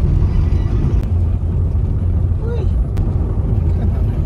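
Steady low rumble of a car's engine and road noise heard from inside the cabin while driving, with faint voices in the background and a couple of brief clicks.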